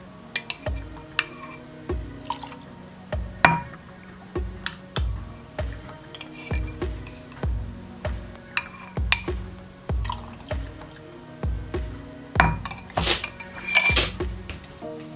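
Background music with a steady beat, over which a spoon clinks against a glass bowl and azuki bean water drips and pours as it is spooned into a glass measuring cup. The clinks come as scattered short taps, bunching up near the end.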